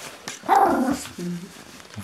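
Russian Toy Terrier giving a short, grumbling bark about half a second in, followed by a brief, quieter low sound; the little dog is protesting at being dressed in a winter jumpsuit.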